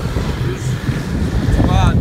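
Wind buffeting the phone's microphone: a loud, uneven low rumble, with a voice beginning near the end.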